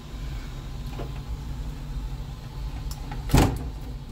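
A sharp plastic pop about three and a half seconds in as the white PTFE filament tube is pulled out of the 3D printer print head's push-fit coupling, with a few faint clicks of handling before it, over a steady low hum.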